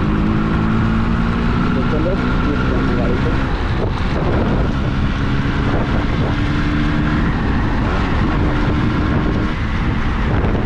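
Yamaha RX100's two-stroke single-cylinder engine running steadily at road speed, with wind on the microphone.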